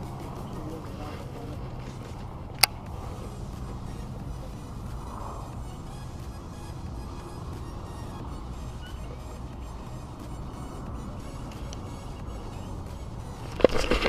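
A small boat's motor running with a steady low hum. A single sharp click comes about two and a half seconds in.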